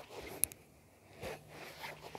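Fingers working over a sneaker: a few short scratching strokes and one sharp click about half a second in.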